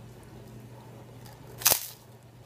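One short, sharp crunch near the end as a crispy Magic Pops puffed wafer is bitten into.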